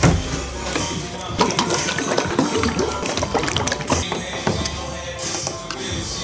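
Background music, with a run of short metallic clicks and knocks from a paint tin's lid being prised off and handled.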